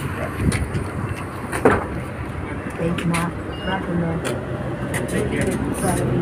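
City transit bus idling at a stop: a steady low engine hum, with scattered knocks and clicks as a passenger steps aboard.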